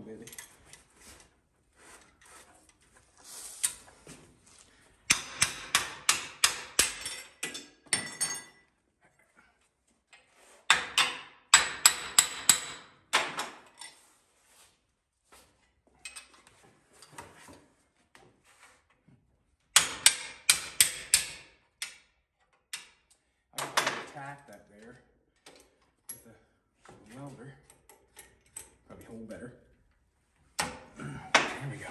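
Hammer striking a metal part clamped in a bench vise, in several quick runs of blows a few a second, with pauses between.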